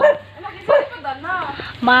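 A dog yipping and whining a few times in short calls that rise and fall in pitch.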